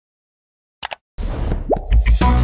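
Animated-intro sound effects: silence, then two quick clicks just under a second in, followed by a swelling effect with a short rising pop that runs into the start of intro music.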